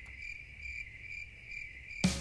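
Faint cricket chirping, a high pulsing trill repeating about three times a second: the comic 'crickets' sound effect laid over an awkward silence.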